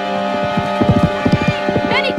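Hoofbeats of a spooked horse galloping off, coming in quick succession, over background music with held tones.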